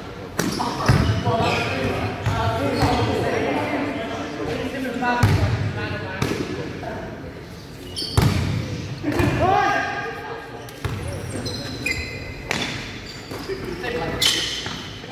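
A basketball bouncing and thudding at irregular intervals on a wooden sports-hall floor during a game, with players' voices calling across the court in a large indoor hall.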